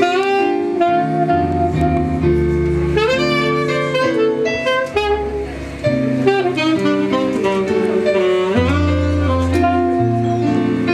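Live jazz: a saxophone plays a melody of held notes over the band's accompaniment.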